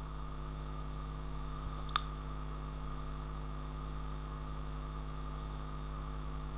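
Steady low electrical mains hum in the recording, with a single short click about two seconds in.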